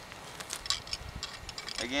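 Quiet outdoor background with a few faint clicks, and no shot fired; a man's voice starts near the end.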